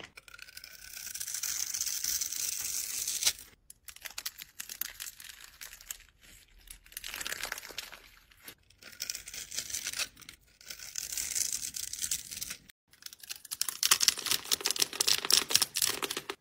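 Kinetic sand being squeezed and crushed in the hands and crumbling apart: a crisp, hissing crunch that comes in several separate stretches with brief breaks, loudest near the end.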